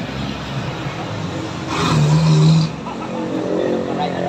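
Road traffic going past close by, with one vehicle louder for about a second midway, a steady low hum over a hiss of tyres and engine.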